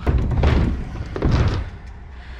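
Stunt scooter rolling down a tall ramp, its wheels running on the ramp surface, with wind rushing over the action-camera microphone; the noise surges twice, about half a second and about a second and a half in.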